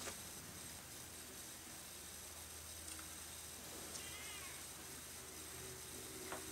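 A domestic cat meowing faintly, one short meow a little past the middle.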